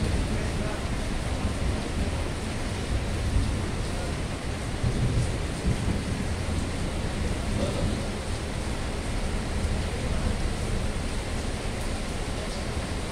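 Heavy rain falling steadily, a dense even hiss with a constant low rumble underneath.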